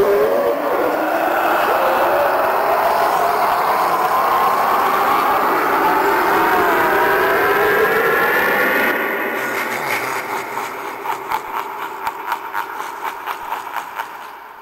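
The Spirit Halloween Harvester of Souls animatronic playing its soul-sucking sound effect through its speaker: a loud rushing roar with wavering, rising wails in it. About nine seconds in it breaks into a fast fluttering pulse that fades away.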